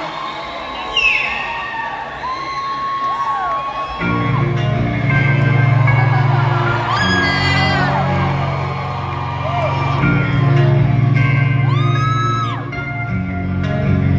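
Arena crowd cheering and whooping; about four seconds in, a low sustained musical drone from the stage comes in and holds under the cheers, with loud rising-and-falling whoops twice more.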